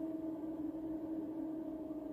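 Steady sustained drone from a meditation tone track: one unchanging low pitch with a fainter overtone above it.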